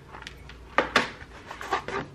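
A few light knocks and clatters of objects being handled in a sewing cabinet drawer, the sharpest about a second in.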